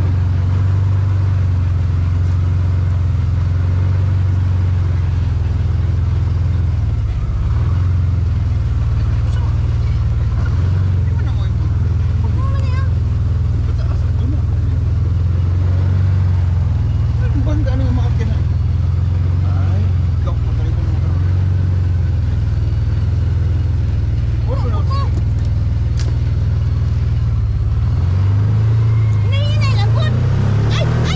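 Side-by-side utility vehicle's engine running steadily at low trail speed, a continuous low drone heard from the cab, with a brief dip about seven seconds in.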